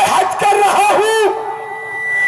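A man's voice, amplified through the stage microphones, drawn out with a pitch that wavers up and down in quick arches, like a warbling call. It is loudest for about the first second and a quarter. Near the end a thin, steady high whistle sounds.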